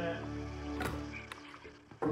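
Held electronic keyboard notes dying away quietly, with a few faint clicks.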